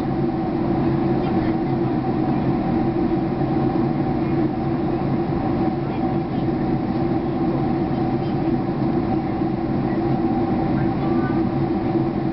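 Steady cabin noise inside a Boeing 767-300 airliner during descent: an unbroken drone of engines and rushing air with a constant low hum.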